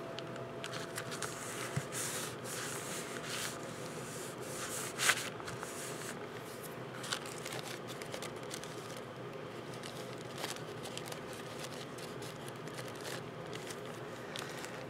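Soft paper and coffee-filter rustling as hands press down a glued paper strip and handle the envelope, with light scattered clicks and one louder brief rustle about five seconds in, over a faint steady hum.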